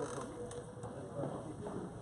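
Padel rackets hitting the ball in a rally: sharp pops at the start and about half a second in, over low chatter from nearby spectators.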